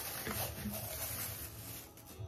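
Rustling and light handling noise of clear plastic breast-pump parts being turned over in the hands, stopping abruptly near the end.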